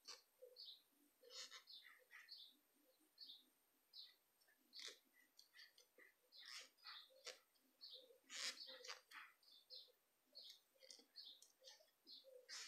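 Faint, irregular little squeaks and ticks of a metal crochet hook pulling through doubled wool yarn as double crochet stitches are worked.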